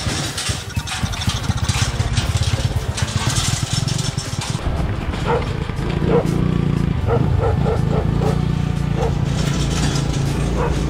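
Motorcycle engine of a homemade three-wheeler running as it drives along a dirt track. From about halfway, a dog barks repeatedly, several short barks in quick succession.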